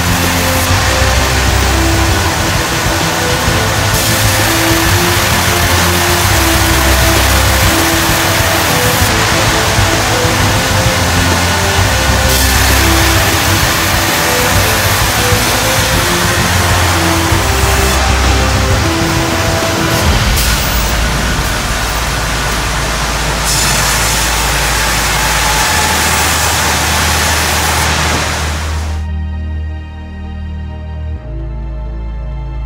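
Background music with steady notes and a shifting bass line, laid over loud, continuous sawmill machinery noise from saws and conveyors. The machinery noise drops away about a second before the end.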